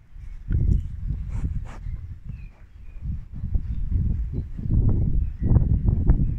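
Rustling and low thuds close to the microphone as a sheep rubs its woolly head against a person's leg, in uneven bursts with short lulls about half a second in and halfway through.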